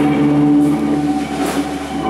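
Live rock band with electric guitars holding a sustained, droning chord, the level dipping slightly near the end.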